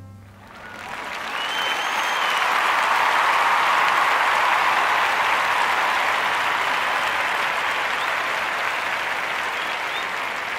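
Audience applause that swells over the first two seconds, then holds steady and slowly fades, with a brief high whistle about two seconds in.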